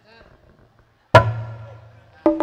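A single loud stroke on a drum of the live gamelan accompaniment about a second in, its low tone ringing on for most of a second.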